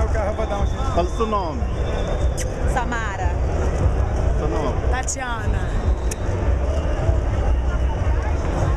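Crowd of many voices talking and shouting over one another, with a few sharp high calls about three and five seconds in and a constant low rumble underneath.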